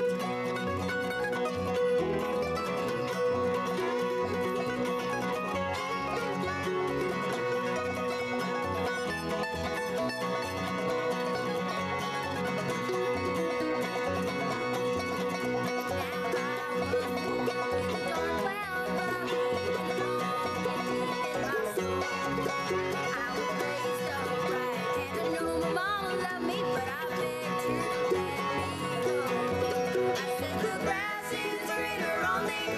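A bluegrass band playing: mandolin, fiddle, acoustic guitar, banjo and upright bass together at an even level.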